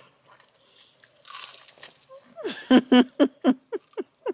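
A child biting and chewing crunchy fried food, with soft crunches, then a short run of quick laughter, the loudest part, in the last second and a half.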